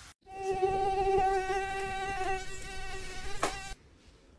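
Mosquito buzz sound effect: one steady, high whine that wavers slightly and cuts off suddenly near the end, with a brief click just before it stops.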